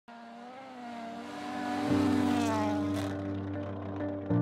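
Toyota Yaris WRC rally car's turbocharged four-cylinder engine revving hard on a snowy gravel road, its note climbing and then falling away near the end. Background music with steady sustained notes comes in about two seconds in.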